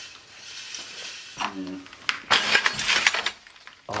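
Broken glass shards inside a smashed CRT television screen clinking and crunching as a hand rummages through them, with the densest clinking from about two to three seconds in.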